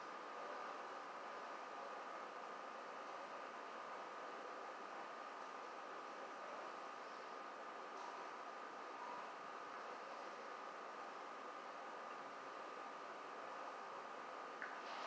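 Faint steady hiss with a thin, steady high whine running under it: the recording's background noise, with no distinct event.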